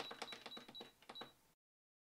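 Domestic sewing machine stitching, a quick, even run of needle clicks over the motor's whine, cut off abruptly about one and a half seconds in.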